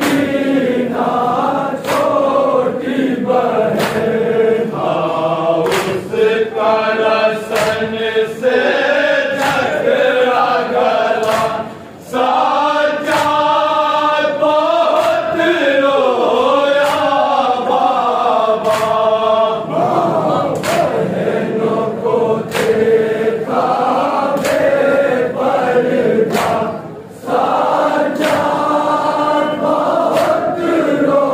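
A group of men chanting a noha, a Shia Muharram lament, in unison, with brief breaks between lines. Sharp slaps of hands on chests (matam) keep a steady beat, about one a second.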